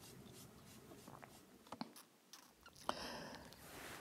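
Very faint room tone with a couple of small clicks, about two and three seconds in.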